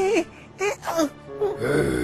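A cartoon character's wavering, strained wailing cry that breaks off just after the start, followed by a couple of short falling cries, with background music swelling from about halfway through.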